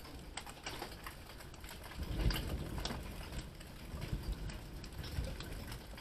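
Hail pelting down, a dense, irregular patter of sharp clicks and ticks on hard surfaces mixed with falling rain, growing louder about two seconds in.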